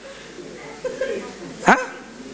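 A man's short questioning "ha?", rising sharply in pitch near the end, after a quiet pause with faint murmuring in a hall.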